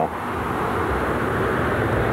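Steady rumble of road traffic on an overpass, slowly growing louder.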